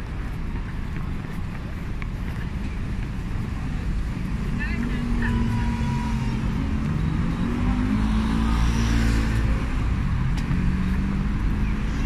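City street ambience: road traffic running with a steady low rumble, and people's voices from about halfway through.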